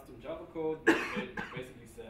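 A man coughs once, sharply, about a second in, among low, speech-like vocal sounds.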